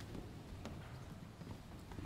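Children's footsteps and shuffling as they walk up and sit on the church's carpeted steps and wooden floor, faint, with a few light knocks.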